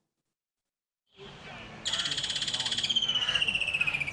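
About a second of silence, then outdoor background noise and, from about two seconds in, an animal's rapidly pulsed high trill that slides slowly down in pitch.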